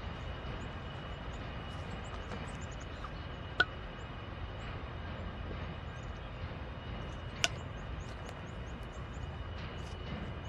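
Norfolk Southern diesel locomotive approaching slowly at a distance, its engine a low steady rumble. Two sharp metallic clicks stand out, one a little over a third of the way in and one about three-quarters through, with small high chirps scattered over the top.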